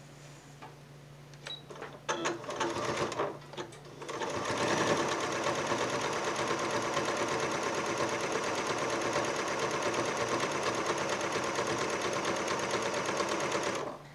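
Computerized sewing machine with a walking foot stitching through quilt layers. A few short bursts of stitching come about two to four seconds in, the backstitch at the start of the seam. Then it runs steadily from about four seconds and stops at the end.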